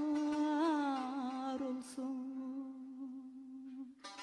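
A woman's voice holds one long sustained note in mugam singing, with no accompaniment. It wavers in a small ornament about half a second in, then settles a little lower in pitch and slowly fades.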